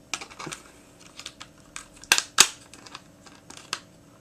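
Small hard-plastic clicks and taps as an orange missile is pressed into the launcher of a 1987 Kenner M.A.S.K. Billboard Blast toy, the two loudest clicks coming close together just after two seconds in.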